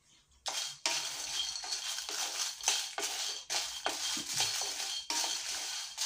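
A spatula stirring dried red chillies and other small dry ingredients roasting in a nonstick pan. Repeated scraping and rattling strokes start about half a second in.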